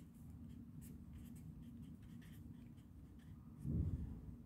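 Pen writing on paper: faint, short scratching strokes as a formula is written out by hand, over a low steady hum, with a brief low sound near the end.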